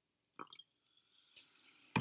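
Near silence, broken only by a brief faint sound about half a second in; a woman's voice breaks in with a loud exclamation at the very end.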